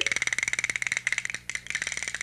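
A fast, even rattle of clicks with a steady high buzz over it, breaking off briefly about a second and a half in.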